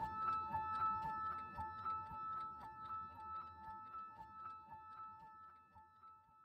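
The tail of the background music: a clock-like tick-tock of two alternating pitched notes, about four ticks a second, fading away.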